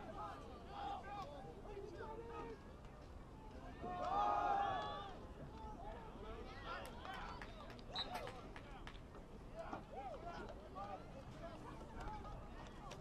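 Scattered shouting voices of players and people on the sideline at a football game, with a louder burst of several voices yelling at once about four seconds in.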